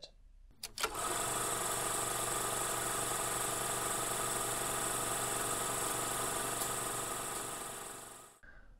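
Film projector running: a steady mechanical whir and clatter that starts with a click about a second in and fades out near the end.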